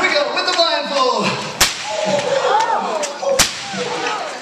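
A bullwhip cracked twice, sharp single cracks about a second and a half and three and a half seconds in, with audience voices and whoops between them.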